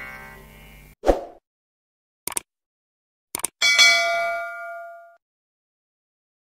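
The tail of the concert music fades out. It is followed by a low thud, a few short clicks and a bell-like ding that rings out for about a second and a half. These are set in dead silence, like sound effects added to an edited ending.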